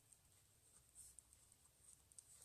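Near silence with faint scratching of a pen writing on paper on a clipboard.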